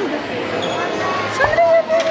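Background noise of a busy indoor hall, with a soft thump about a second and a half in. Right after it a woman says a drawn-out "So".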